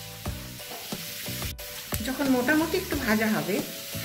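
Chunks of elephant yam frying in hot mustard oil in a karahi, sizzling, with a steel spatula stirring and scraping against the pan. It gets louder and busier about halfway through.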